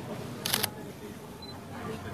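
A single camera shutter click about half a second in, short and sharp, over a murmur of voices.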